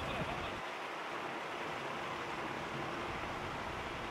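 Steady outdoor background hiss, with a faint voice briefly just after the start.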